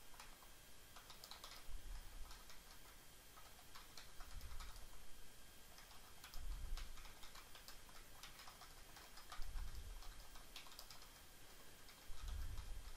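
Faint typing on a computer keyboard: quick, irregular keystroke clicks as a sentence is typed. A dull low thump comes every two to three seconds.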